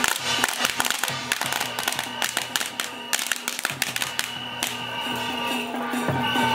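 Traditional temple-troupe percussion: hand cymbals clashing and a drum beating in quick, dense strikes for the first few seconds, thinning toward the end, over a steady ringing tone.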